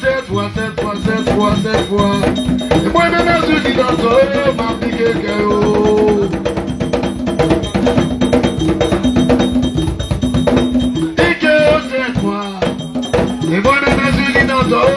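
Haitian Vodou ceremonial hand drums playing a fast, steady rhythm, with singing over the drumming throughout.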